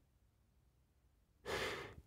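Near silence, then about a second and a half in a narrator's audible breath, lasting about half a second, taken just before speaking.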